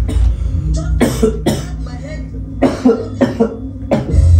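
A sick man coughing several times in short, sharp bursts: a pair about a second in, then a run of three or four in the second half. A low, steady hum of television sound plays underneath.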